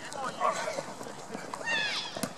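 Football players shouting across the field as a play runs, with running footsteps. Near the end there is a high, drawn-out yell.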